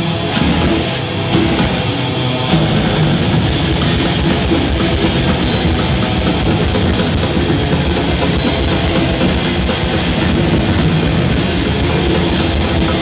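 Death metal band playing live, recorded from the crowd: heavily distorted electric guitars over a drum kit. The sound fills out and gets a little louder about two and a half seconds in.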